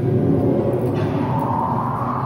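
A steady low droning rumble from the attraction's atmospheric soundtrack, with a higher tone swelling in about halfway through.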